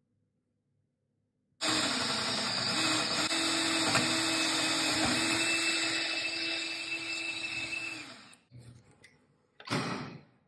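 Cordless drill with a twist bit boring into a wooden board: the motor starts abruptly about one and a half seconds in, runs steadily with small dips in pitch as the bit bites, and winds down about eight seconds in. A brief knock follows near the end.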